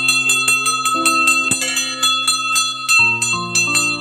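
A temple bell rung rapidly, several bright metallic strikes a second, each ringing on. The ringing stops about three seconds in.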